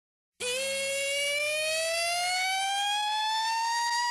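A single siren-like tone in the opening of a hip-hop track, starting about half a second in and gliding slowly and steadily upward in pitch, with no beat under it.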